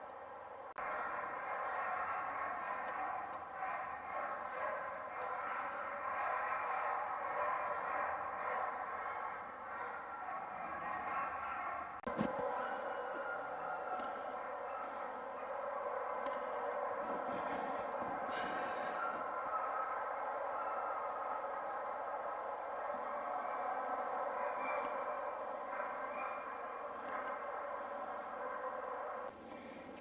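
A chorus of many sled dogs howling together, overlapping wavering voices held steadily and cutting off suddenly near the end. A single sharp click comes a little before halfway.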